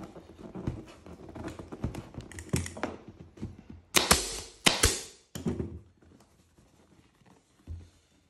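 Pneumatic upholstery staple gun firing twice, about four seconds in: two sharp clacks under a second apart, driving staples through the vinyl cover into the plastic seat base. Lighter rustling and clicking from the cover being stretched and handled comes before them.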